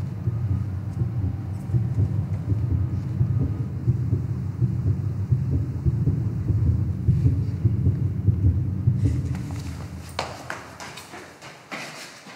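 A deep, steady rumble that fades away over the last two seconds, with a few sharp clicks or knocks near the end.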